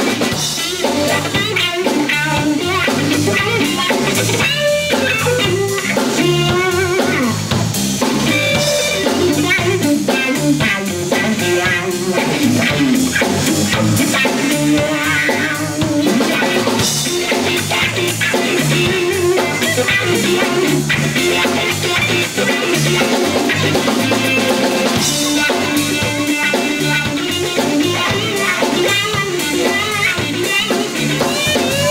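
Live rock trio playing an instrumental break: electric guitar playing bending melodic lead lines over electric bass and a Tama drum kit keeping a steady beat.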